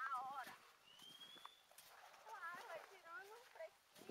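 Faint, quiet voices of people talking some way off, with a short thin high tone, like a whistle, about a second in.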